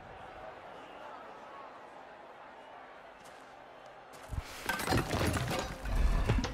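Film soundtrack: a hushed stretch of faint music, then about four seconds in, a heavy crash into metal wreckage with loud shattering and clattering debris.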